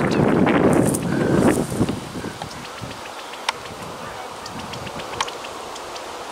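Wind and rustling in dry grass, loudest and most blustery in the first two seconds, then settling to a faint steady hiss with a couple of sharp ticks.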